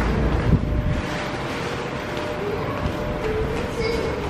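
Loaded shopping trolley rolling fast over a hard tiled floor, its wheels and wire basket rattling with a continuous low rumble that is strongest in the first second.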